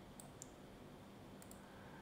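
Faint computer mouse button clicks, two quick pairs about a second apart, over near-silent room tone.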